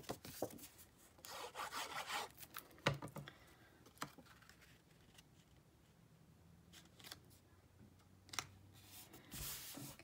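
Cardstock being handled: a paper panel rubbed and slid into place on a card base, with a few soft scrapes and light taps.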